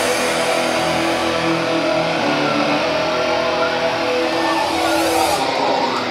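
A live electronic rock band playing: held synthesizer notes with no drum beat, a build-up section between drum passages. Just before the end the top end of the sound drops away for a moment.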